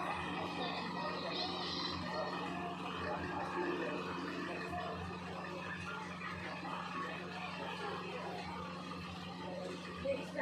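Indistinct background voices, like a television or people talking at a distance, over a steady low hum.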